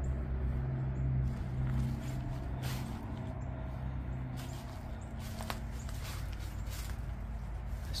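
Footsteps crunching over dead leaves and debris, a handful of separate scuffs and crackles from about three seconds in, over a steady low rumble.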